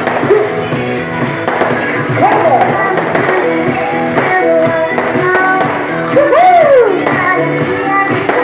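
A woman singing a pop song into a microphone over a loud backing track, played through a PA system, with her voice sliding up and down in pitch twice.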